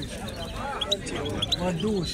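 Caged European goldfinch singing: a quick run of short, high, rising notes about a second in, with people talking in the background.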